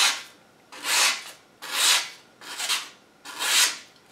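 A sharpened machete blade push-cutting through a sheet of printer paper: four short papery slicing strokes, less than a second apart, as the cut works down the edge.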